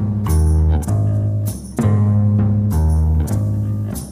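Psychedelic hard rock band playing an instrumental passage: electric guitar and bass guitar sounding sustained chords with a drum kit, in a stop-start riff with brief breaks about halfway through and at the end.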